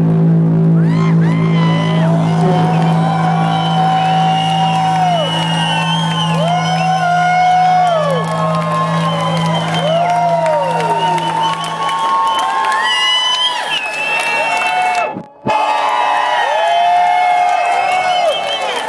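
Live electronic house music with a steady low bass note that stops about two-thirds of the way through, under a club crowd whooping and cheering. The sound drops out for a moment about three seconds before the end.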